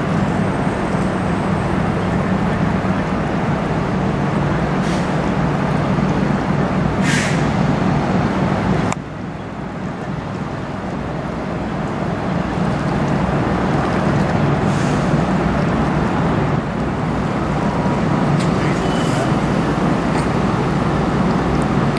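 Steady low rumble of the passing bulk freighter Paul R. Tregurtha's engines. The level drops suddenly about nine seconds in, then builds again.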